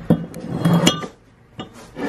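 Welded steel steering spindle parts clinking and knocking against the work surface as the assembly is handled and turned over. There are a few sharp metallic clinks in the first second and a lighter knock later.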